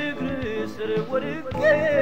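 Ethiopian gospel song: a singer's wavering melodic line over instrumental backing.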